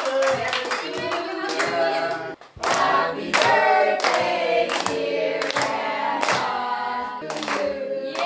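A group of people singing together and clapping in time, a clap about every half second or so. The sound drops out briefly about two and a half seconds in, then the singing and clapping go on.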